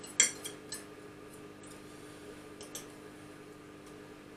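Metal knife and fork clinking and scraping against a ceramic bowl while cutting and picking up food: a few sharp clinks in the first second, then fainter taps near three seconds.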